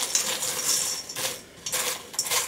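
Rubber spatula stirring cereal coated in melted white chocolate in a stainless steel mixing bowl: the pieces rattle and scrape against the metal in repeated strokes, with a short lull about a second and a half in.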